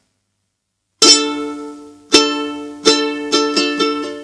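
Ukulele strumming a D minor chord: silent for about the first second, then six strums in a rhythmic pattern, the last three quick together, each chord ringing on.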